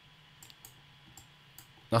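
Several faint, irregular clicks of a computer mouse over a quiet room, as the charts are navigated on screen.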